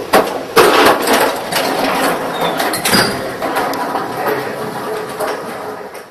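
Suzumo SVR-NNY maki rice-sheet robot running with a continuous mechanical clatter. Sharp knocks come about half a second in and again near three seconds.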